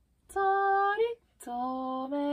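A woman singing slowly on her own, with no accompaniment heard. She holds a long higher note that slides up briefly at its end, then after a short breath holds a lower note.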